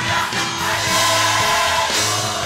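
A large school choir of boys and girls singing a Christmas carol together, several held notes sounding at once.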